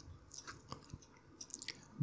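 A few faint, short clicks scattered over quiet room tone, with a small cluster of them near the end.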